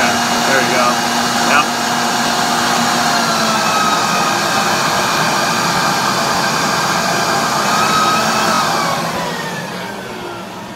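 Black & Decker electric leaf blower running at high speed: a loud, steady whine over a rush of air. Near the end the motor's pitch slides down and the sound fades as it is switched off and spins down.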